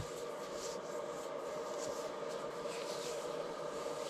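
Faint steady hum and hiss with no distinct events: room tone with a low machine or electrical drone.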